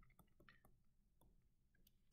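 Near silence, with a few faint scattered ticks of a stylus writing on a touchscreen.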